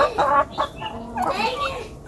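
Domestic poultry clucking: a run of short calls, several a second.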